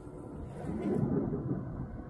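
A low, deep rumble of a distant explosion, swelling about half a second in and fading again over about a second.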